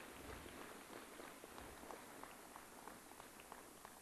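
Faint, sparse applause: scattered claps over a low, even hiss.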